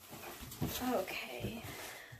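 A woman's voice making short sounds without clear words, one of them gliding up and down in pitch about a second in.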